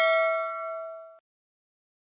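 A single bell-like ding sound effect, rung once and left to fade with several overtones, then cut off abruptly just past a second in.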